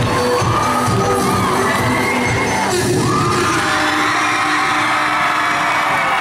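Pop dance music playing with a crowd of children and teenagers cheering and shouting over it. The beat stops about halfway through and the cheering goes on.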